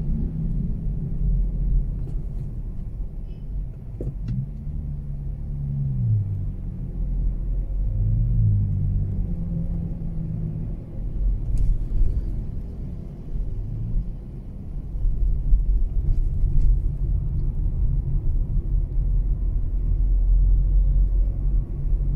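Car driving in city traffic, heard from inside the cabin of a Mazda3: a steady low rumble of engine and road noise. Engine tones drop in pitch about four seconds in and again about eight seconds in.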